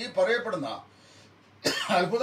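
A man coughing and clearing his throat in two bouts with a short pause between; the second starts sharply.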